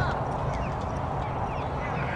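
Wind noise on the microphone over distant voices of players and spectators, with a few short high chirps.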